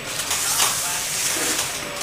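Steady background hiss with a faint voice in the background.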